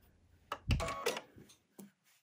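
Sewing machine being set to drop its needle: a click and a low thump about half a second in, a brief mechanical whir, and another click near the end.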